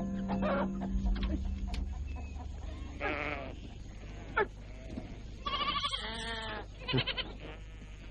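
A flock of sheep and goats bleating: several short bleats, with a longer one in the second half, over a low music drone that fades out in the first two seconds.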